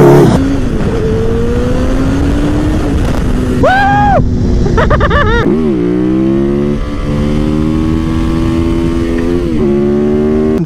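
Motorcycle engines under way: first a bike accelerating with its engine note rising slowly, then another motorcycle pulling through the gears, its pitch climbing steadily and dropping at gear changes about seven seconds and nine and a half seconds in.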